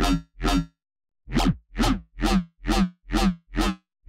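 Xfer Serum dubstep bass patch playing eight short, loud stabs about two to three a second, with a short break about a second in. Each stab has a deep sub underneath and a wonky, vowel-like growl above, with a comb filter being dialled in to add tonality.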